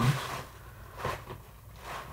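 Hands rummaging through the contents of an opened subscription box: soft rustles and scrapes of items being felt and shifted.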